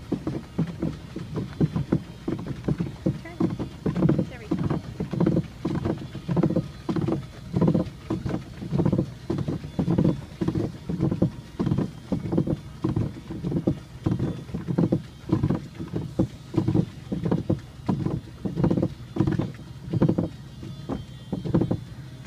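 Boat paddle strokes pulling through the water in a steady rhythm, about two strokes a second.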